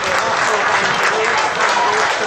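Football crowd applauding steadily as the teams walk out onto the pitch, with scattered voices calling out among the clapping.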